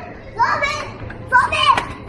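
Young children talking and calling out in high, sing-song voices, in two short bursts.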